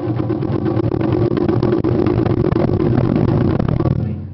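Japanese taiko ensemble drumming fast and densely on several barrel-shaped taiko drums, the strokes running together into a continuous rumble that breaks off right at the end.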